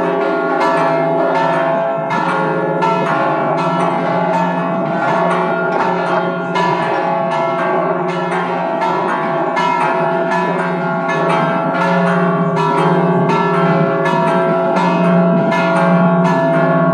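Peal of five church bells ringing together: St Philip's parish church, Żebbuġ, Malta, with bells cast by Leotta, Bozzoli, Trigance and Bouchet, the largest from 1761, tuned about F♯, E, C♯, C and C♯. Clapper strikes come two to three a second, and each bell keeps ringing under the next strikes in a loud, continuous peal.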